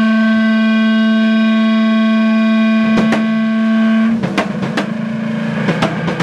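A single distorted electric guitar note held at a steady pitch. It breaks off about four seconds in, when a rock drum kit comes in with a quick run of hits, starting the song.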